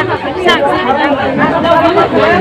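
Speech: a woman talking, with other voices chattering around her.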